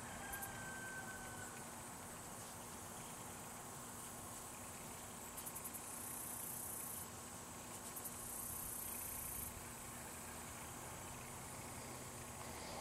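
Faint insects trilling high in pitch, in stretches of a second or two that start and stop, some opening with a quick pulsing.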